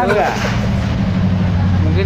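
Engine of a passing VW car in a convoy, running with a steady low note that grows stronger in the second half.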